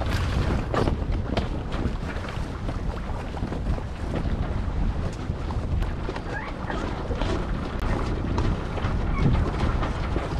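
Wind buffeting the microphone aboard a sailboat under way, a steady rumbling rush, with scattered faint rustles and knocks from the sails and rigging.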